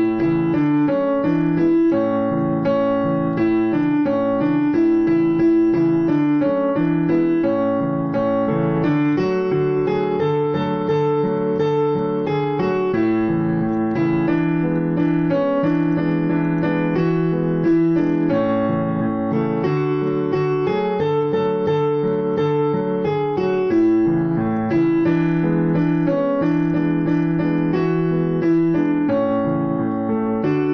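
Background piano music with a steady rhythm and repeating melodic phrases.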